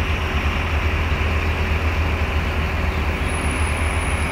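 Steady street traffic noise, dominated by the low, constant rumble of a city bus idling close by at the curb.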